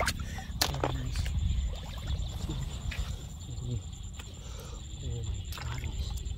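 Water splashing and sloshing as hands dig into the mud of a shallow pond, with two sharp splashes, one about half a second in and one near the end, over a low steady rumble.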